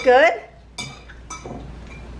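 Two light clinks of cutlery against a dish, about half a second apart.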